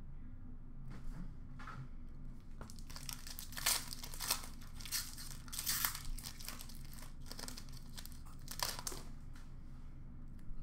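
Foil wrapper of a 2021 Panini Mosaic card pack being torn open and crinkled by hand, in a string of short crinkly bursts, loudest a little before and after the middle.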